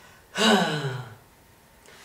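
A man lets out one drawn-out, breathy sigh-like 'haah' that falls in pitch, about a third of a second in and lasting under a second.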